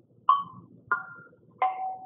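Three notes struck on a small tuned percussion instrument, bell-like chimes, about two-thirds of a second apart: a middle note, a higher one, then a lower one that rings on longest.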